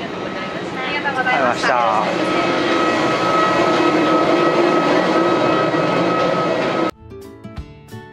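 Steady machinery hum of a parked airliner at the gate, with a constant high whine, heard at the cabin door. A brief voice cuts in about a second in. About seven seconds in the hum cuts off suddenly and strummed acoustic guitar music begins.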